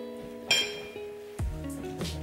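Background music with plucked guitar notes, a bass line coming in past the middle. About half a second in, a single sharp clink of a metal fork against the plate.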